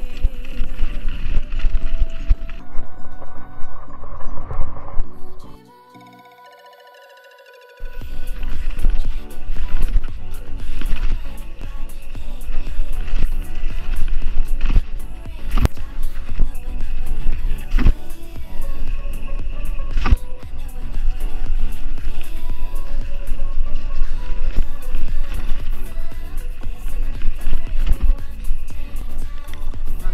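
A music track plays over rolling tyre noise and wind buffeting from a mountain-bike descent. About six seconds in the bass cuts out for about two seconds, leaving only the higher parts, then comes back in full.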